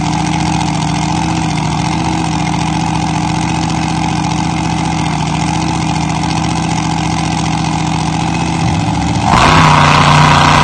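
Mud drag racing car's engine idling steadily at the start line, then suddenly opening up to full throttle, much louder, about nine seconds in as the car launches down the dirt track.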